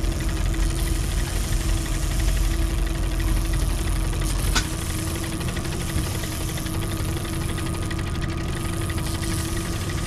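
Boat outboard motor idling steadily, with one sharp click about halfway through.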